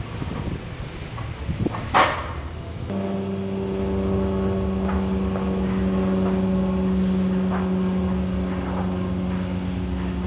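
Arm-over-arm rope pull: the rope is hauled hand over hand and a weighted sled drags across artificial turf, with a sharp knock about two seconds in. About three seconds in, a steady droning hum starts and carries on, louder than the pulling.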